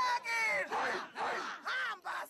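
Voices chanting or singing in a run of short calls, each rising and falling in pitch.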